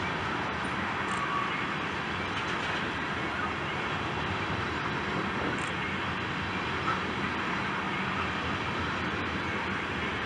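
Freight train tank cars rolling past: a steady rumble of steel wheels on rail, with one sharper click about seven seconds in.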